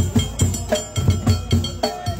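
Ahwach percussion: several large frame drums (tallunt) beaten together in a fast, even rhythm, about four to five strokes a second, with a metal naqus struck with a rod ringing over the drums.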